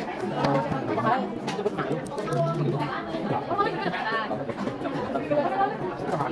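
Indistinct chatter of several young voices talking over one another, with a few light clicks.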